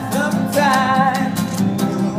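A man singing to his own strummed acoustic guitar: one long held sung note over the first second or so, with quick, even strumming underneath.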